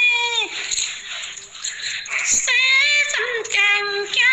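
A high, unaccompanied singing voice in a folk song, sent as a phone voice message and so thin in sound. A long held note falls away about half a second in. A breathy, hissy pause follows, and the singing starts again about two and a half seconds in with notes that bend up and down.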